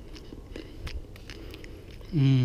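A person chewing freshly picked black raspberries close to the microphone: a scatter of soft, irregular mouth clicks and smacks.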